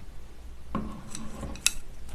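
Tableware on a table: a bowl is knocked and rings briefly about halfway in, then there is a short sharp clink.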